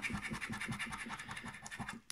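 A coin scratching the coating off a scratch-card calendar window in quick, rapid back-and-forth strokes.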